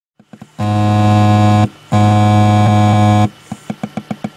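A ship's horn sounds two long, loud blasts. Near the end a ship's engine starts running with a quick, steady beat of about six a second.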